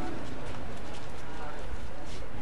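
Indistinct voices over a steady noisy background, with a few light knocks and clicks.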